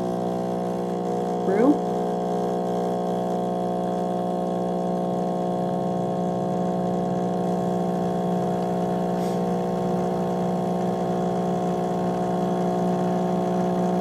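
Krups EA9000 superautomatic espresso machine's pump running as it brews espresso into a cup of foamed milk, a steady hum that doesn't change.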